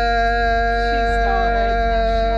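A man's voice holding one long, loud, steady note, drawn out from a 'yeah'.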